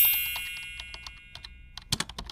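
End-screen animation sound effects: a bright shimmering chime that rings out and fades over about a second and a half, under a run of quick typewriter-like clicks, with a louder click near the end.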